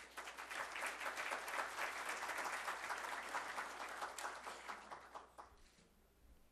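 Audience applauding at the end of a speech: many hands clapping at once, thinning out and dying away about five seconds in.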